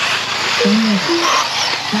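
Radio-controlled race trucks running on a dirt track, a steady hiss of motors and tyres, with a few short vocal sounds about halfway through.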